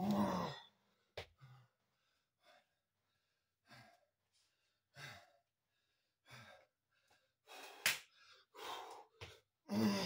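A man's heavy, gasping breaths and voiced sighs, out of breath from a long set of burpees: a loud groaning exhale at the start and another at the end, with quieter breaths in between. There is a short click about a second in and a sharp knock about two seconds before the end.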